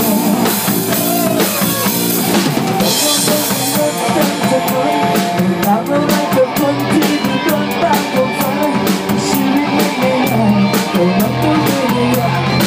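A rock band playing live in a small room: electric guitars through amplifiers over a drum kit, with a cymbal crash about three seconds in and then a steady drum beat.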